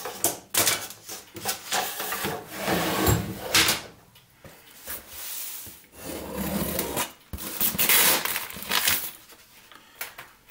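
Cardboard shipping box being handled: irregular rubbing and scraping with a few sharp knocks.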